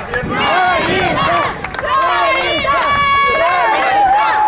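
A group of men shouting and chanting together in celebration, with a long held shout near the middle and scattered clapping.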